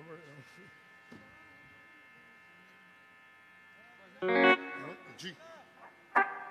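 Steady electric hum and buzz from the band's amplified instruments while idle, with a single electric guitar chord struck through the amplifier about four seconds in, ringing loudly and fading within a second.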